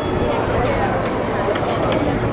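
Crowd of people walking together and chattering, many overlapping voices with no single clear speaker.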